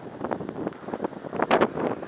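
Wind buffeting the camera microphone in irregular gusts, the strongest about one and a half seconds in.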